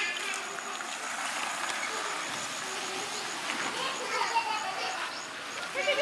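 Indistinct voices in the background, with a faint high chirp repeating about four or five times a second.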